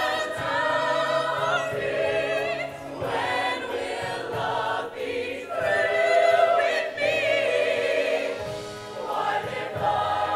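Show choir singing in harmony, a female soloist on a handheld microphone leading over the group, in phrases of long held notes with vibrato.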